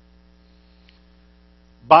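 Faint, steady electrical mains hum, with a man starting to speak just before the end.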